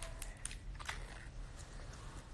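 A toddler drinking from a plastic baby bottle: a few faint sucking clicks and small mouth sounds over a low steady hum.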